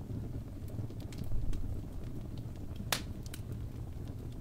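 Log fire crackling in a fireplace: scattered sharp snaps and pops, the loudest just before three seconds in, over a low steady rumble.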